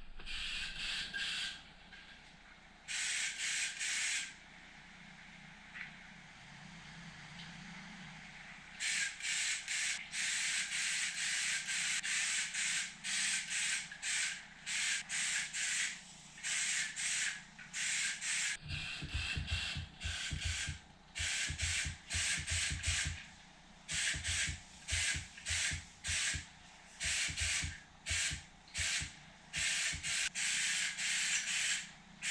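Ingersoll Rand 270G HVLP spray gun hissing in bursts of compressed air and paint as the trigger is pulled and let go. There are two bursts near the start, then from about nine seconds in a quick on-off series of bursts, each a second or less long.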